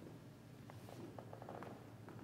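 Near silence: quiet room tone with a steady low hum, and a few faint soft clicks and rustles in the middle.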